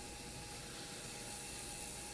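Faint steady hiss with a few thin, steady hum tones: the background noise of a radio studio's microphone channel.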